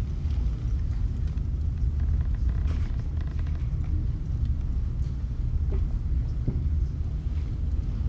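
Steady low rumble of room noise picked up by a handheld recorder, with a few faint knocks scattered through it.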